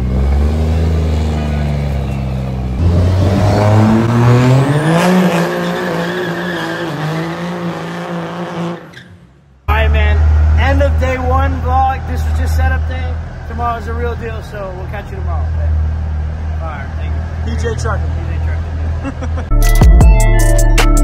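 A lifted pickup truck's engine accelerating, its pitch climbing for a few seconds and then holding, with a high whine rising alongside; it fades out about nine seconds in. Then a man talking over a steady low hum.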